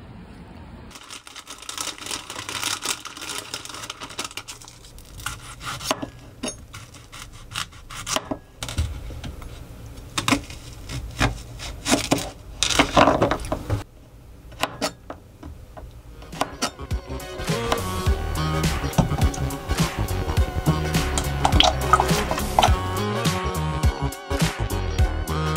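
A Global mini cleaver chopping green onion on a cutting board, a run of quick sharp knocks. In the last third, background music with a steady beat takes over.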